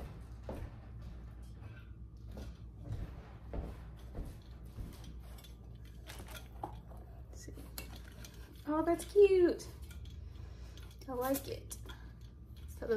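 Light clinks and knocks of a stainless steel Stanley tumbler being handled on a kitchen counter while a silicone boot is fitted to its base, with a brief louder, wavering pitched sound about nine seconds in.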